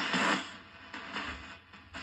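Spirit box radio sweeping through stations, giving choppy bursts of static and broken radio sound. It is loudest in the first half second, then drops to fainter, irregular bursts.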